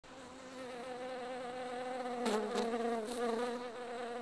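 A honeybee buzzing in one steady hum that wavers slightly in pitch. A few faint clicks come in the second half.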